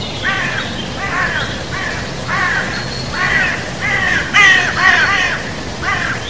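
A bird calling over and over with short, harsh, caw-like calls, about one a second, the loudest a little past the middle.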